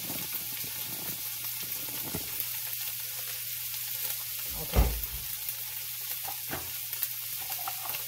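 Canned corned beef hash sizzling steadily as it fries in a nonstick skillet, with one dull thump about five seconds in.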